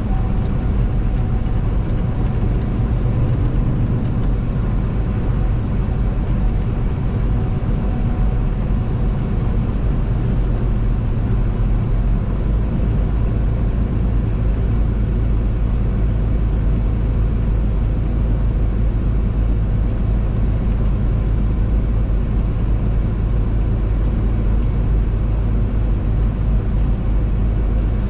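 Steady in-cab drone of a truck cruising at highway speed: a deep, even engine hum under a constant hiss of tyre and road noise.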